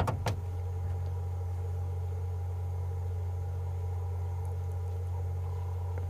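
Safari vehicle's engine idling: a steady low hum with a few faint steady tones above it.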